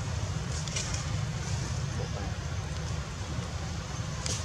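Wind buffeting the microphone: a steady low rumble under an even outdoor hiss, with a couple of faint short high sounds under a second in.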